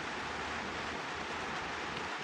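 Steady rain noise: a constant, even hiss of rainfall with no distinct drops or knocks.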